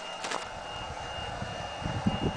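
Low, steady rumbling background noise with a thin, faint high whine running through it; the rumble turns uneven and gusty near the end.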